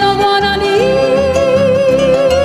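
A woman singing a long held note with vibrato into a microphone, stepping up to a higher note about three-quarters of a second in, over plucked-string accompaniment with a steady bass beat.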